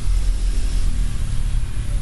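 Wind buffeting the microphone: a loud, uneven low rumble with no distinct events.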